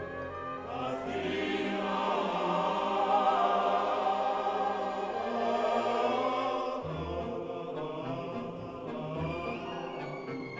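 Opening title music of a 1950s film musical: a choir singing sustained chords over orchestral music, the texture shifting about seven seconds in.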